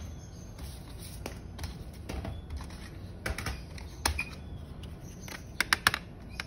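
Plastic CD jewel cases being handled: scattered light clicks and knocks, then a quick run of four or five sharp clicks near the end.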